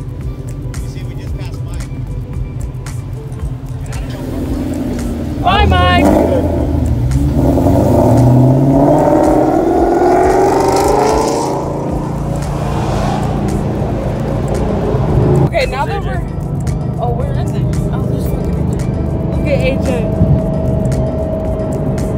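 Car engine accelerating hard from about five seconds in, its note rising steadily for several seconds, heard from inside the cabin, then settling into a steady cruise.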